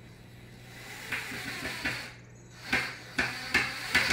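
Cordless drill/driver with a Phillips bit driving a wood screw into pallet boards: a rising whir for about a second, then a few sharp knocks near the end.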